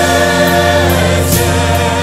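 Christian worship music: a choir singing long held notes over instrumental accompaniment.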